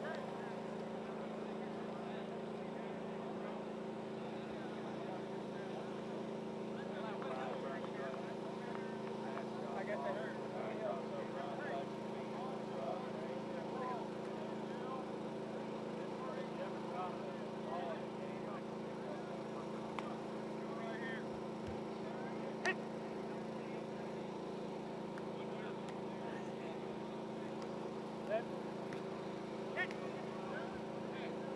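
A steady drone holding several even tones, with faint, unintelligible voices of people out on a football field coming and going. A few sharp clicks come near the end.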